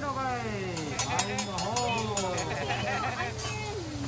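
Voices at a hibachi grill with no clear words: a long falling vocal glide at the start, then a quick run of about a dozen sharp clicks, roughly six a second, between about one and two seconds in, over a steady low hum.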